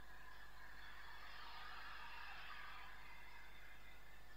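Faint background noise: a steady low hum with a soft hiss that swells through the middle.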